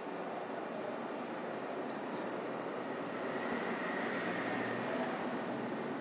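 Mustard seeds, black peppercorns and cumin sizzling steadily in hot sesame oil in a nonstick pan, with a few light crackles around the middle.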